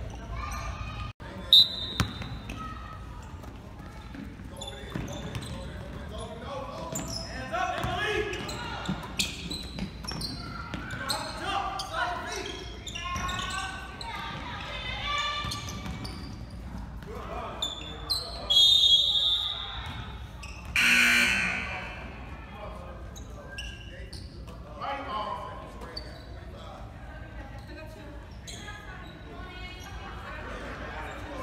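Basketball game in a gym: a ball bouncing on the hardwood court and indistinct voices echoing in the hall. A short referee's whistle sounds about a second and a half in, and a longer whistle blast comes around eighteen seconds in.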